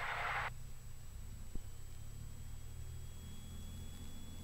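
Turbocharged six-cylinder engine of a Cessna 206 held at 1800 RPM for the run-up, heard only as a faint low hum through the headset intercom feed. The intercom hiss cuts off about half a second in, and there is a single click a little later.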